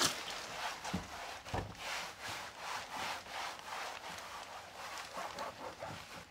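A cloth wiping a car's plastic inner door panel in quick back-and-forth strokes: a rhythmic rubbing swish, roughly three strokes a second, easing off near the end.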